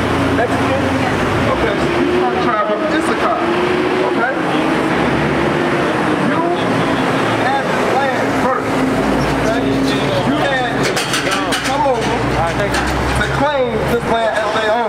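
Indistinct voices talking on a city sidewalk over road traffic noise, with a low rumble of a passing vehicle building in the second half.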